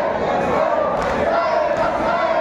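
Crowd of men chanting a Muharram marsiya together in a loud, wavering, drawn-out melody, with rhythmic chest-beating (matam) faintly audible about once a second.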